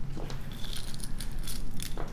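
Loose faceted gemstone beads clicking and rattling against one another as a handful is put back, a scatter of small irregular clicks.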